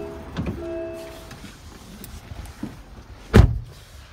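A person climbing into the driver's seat of an MG ZS, with a short electronic tone near the start, then the driver's door pulled shut with one solid thump about three and a half seconds in.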